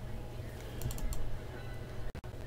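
Several light clicks in quick succession about a second in, over a low steady rumble.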